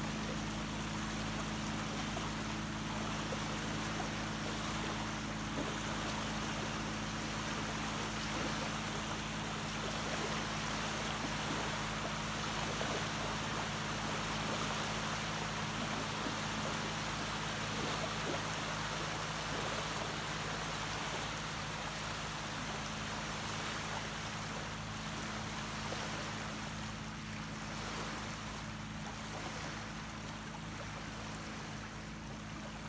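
Small waves lapping and washing up on a sandy lake shore in a steady wash of water noise, with a constant low hum underneath.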